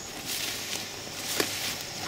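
Footsteps swishing through tall grass, with a single sharp click about one and a half seconds in.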